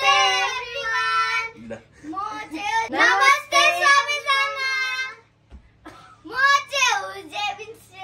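Young children singing loudly in three short phrases with brief pauses between them.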